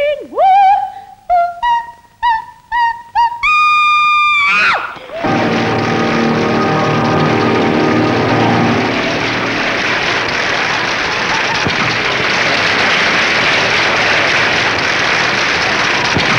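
A soprano sings a short, rising phrase with a wide vibrato, ending on a long held high note that breaks off about five seconds in. Applause follows and carries on steadily to the end.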